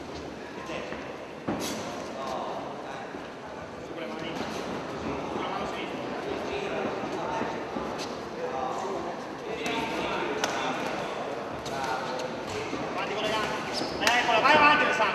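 Voices of people calling out around a boxing ring, with several sharp thuds of the bout, the loudest about a second and a half in. The voices grow louder near the end.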